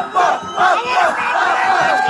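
A crowd of fans chanting a short word over and over in a fast rhythm, then breaking up about a second in into a loud mix of overlapping shouts and cheers.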